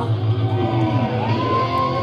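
Live rock band playing loud in a small club, electric guitar over a steady low bass. A high note slides up about a second in and is then held steady.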